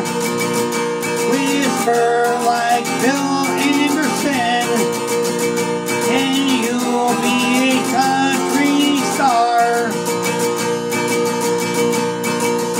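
Takamine acoustic guitar strummed steadily, with a man singing a country song over it; the singing stops about nine or ten seconds in, leaving the guitar alone.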